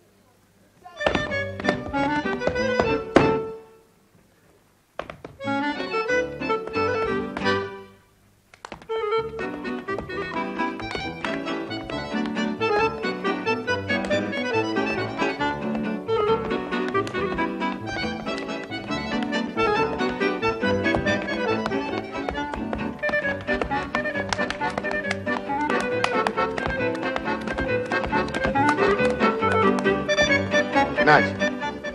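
Accordion-led dance band with piano playing a brisk polka. It starts about a second in, breaks off twice in the first nine seconds, then plays on without a stop.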